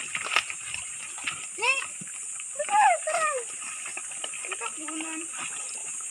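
A few short, wordless vocal sounds from a person's voice, sliding up and down in pitch, over a steady high hiss, with light splashing from piglets in a shallow water basin.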